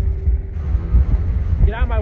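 Steady low rumble of a vehicle driving, heard from inside the cabin, with a faint steady hum tone through the first half.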